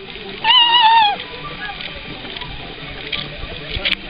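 A blade of grass blown as a whistle: one short, high, wavering squeal about half a second in that drops in pitch as it cuts off, with a squeaky, dolphin-like sound.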